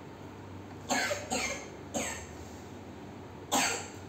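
A person coughing: three short coughs close together about a second in, then one more near the end.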